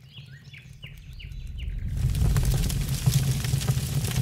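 Birds chirping in a quick series of short falling calls for about two seconds, then a low rumbling noise with scattered crackles swells up and holds, drowning them out.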